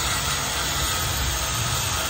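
Handheld electric power tool running steadily on the wooden floor planks of a truck cargo bed: an even, continuous whirr with a low rumble underneath.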